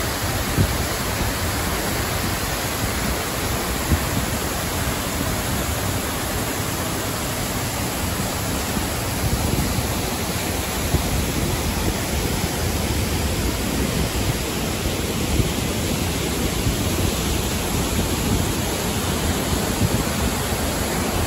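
Water pouring over a concrete dam spillway and cascading into the pool below: a steady rush of falling water.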